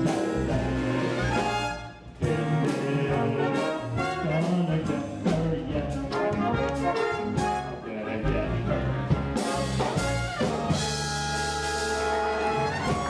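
Live school pit band playing an upbeat, jazzy big-band dance number with brass to the fore and a steady beat, briefly dropping out about two seconds in.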